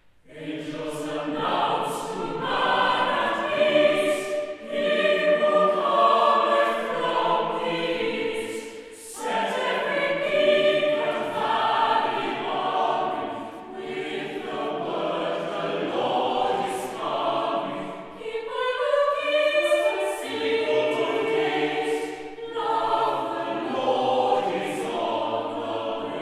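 Mixed-voice chapel choir singing a carol in phrases, starting about half a second in after a short pause.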